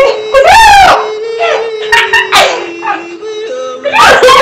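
A loud, high wail that rises and falls within the first second, followed by music with long held notes that step down in pitch near the end.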